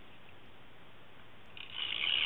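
Faint hiss, then near the end a short scraping rustle under a second long as an Elmer's tape runner is drawn across card stock, laying down adhesive.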